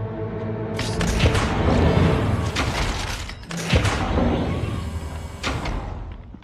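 Film soundtrack: tense score under the heavy mechanical rumble and thuds of a large security door opening. The sound rises about a second in and surges again about three and a half seconds in.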